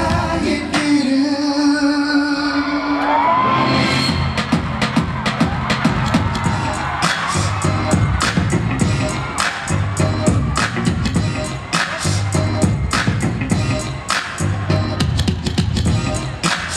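Live pop music through a concert sound system: a held sung note over the first three seconds, a rising glide, then a dance track with a steady beat of sharp percussion hits.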